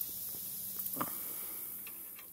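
Quiet background with a steady high hiss, a faint low hum that fades out about halfway, and two light knocks, one at the start and one about a second in.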